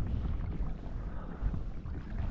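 Wind buffeting the microphone as a low, uneven rumble, with a faint steady rush of water moving past a kayak.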